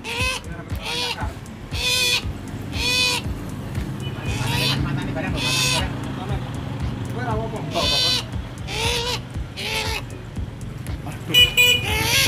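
A small black bird held in the hand giving a short, hoarse call over and over, about once a second, with a louder call near the end.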